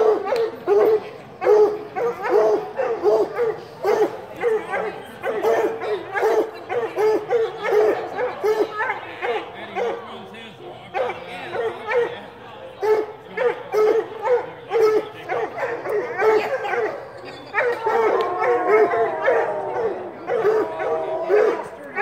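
A dog barking in quick, high yelps, about two a second, keeping up the whole time, with longer drawn-out calls near the end.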